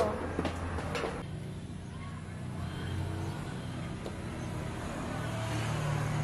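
A steady low mechanical hum, with a few light clicks in the first second.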